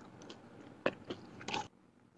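A few faint clicks and crackles of a small plastic soda bottle being handled as a hand takes hold of its cap.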